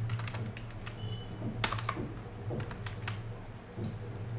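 Computer keyboard keys being pressed as digits are typed, a quick run of clicks near the start and a few louder single presses later, over a steady low hum.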